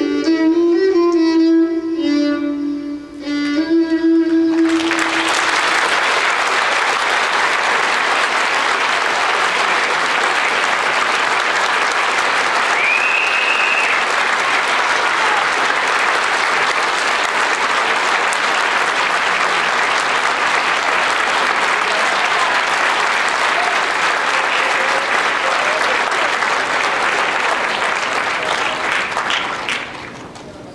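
A piece of music ends on a held note with bowed-string accompaniment. From about five seconds in, an audience applauds steadily, and the applause dies away near the end.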